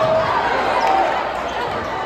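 Crowd voices and chatter in a basketball gym during live play, with a basketball bouncing on the hardwood court. The sound is a steady mix, with no single loud event.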